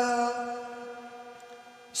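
Male reciter's voice holding the last long chanted note of a Quran recitation (tilawat) on one steady pitch, fading away over two seconds.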